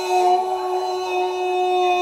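A young man's long drawn-out "gooool" scream celebrating a goal, held on one steady high note.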